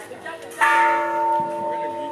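A bell struck once, about half a second in, ringing on with a few steady, clear tones that slowly fade.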